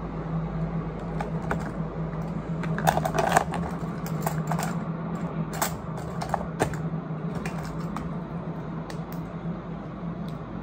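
Small plastic dental supplies clicking and clattering as they are handled and set into a clear plastic compartment organizer box: irregular light taps, busiest about three seconds in. A steady low hum runs underneath.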